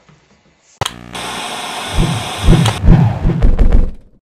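A sharp click, then a loud steady hiss like static, with heavy irregular low thumps over it for the last two seconds; it all cuts off abruptly at the end.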